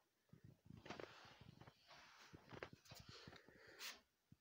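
Faint rustling and scraping with a scatter of small soft clicks and knocks, and a sharper click just before the end.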